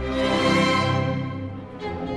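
Student string orchestra playing: violins, cellos and basses bowing sustained, held notes, with a brief lull near the end.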